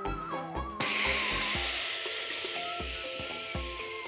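Upbeat background music with a steady beat. About a second in, a sudden loud hissing whoosh sound effect cuts in over it and slowly fades.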